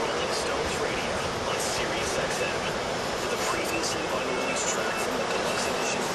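Steady rush of surf breaking and washing up the beach, with faint voices in the distance.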